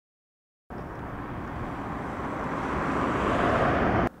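A rushing outdoor noise that starts suddenly after silence, swells steadily louder over about three seconds and then cuts off abruptly.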